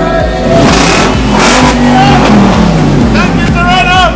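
A vehicle's engine revs up and falls back about a second or two in, over background pop music with a steady beat. Voices come in near the end.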